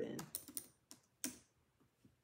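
A few scattered clicks of computer keyboard keys, about five in the first second and a half.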